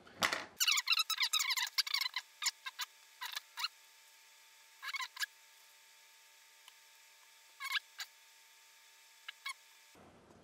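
Sped-up audio: a man's voice and bench handling noises turned into short, high, squeaky chirps, many in the first couple of seconds and then a few scattered ones, over a faint steady high tone.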